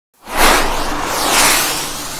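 Whoosh sound effect for an animated logo intro: a rush of noise that starts abruptly a quarter second in, then swells a second time about a second later.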